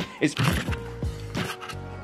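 Light background music under one spoken word, with a few sharp knocks and handling sounds from a camera rig being grabbed in a hurry, as if it were about to fall.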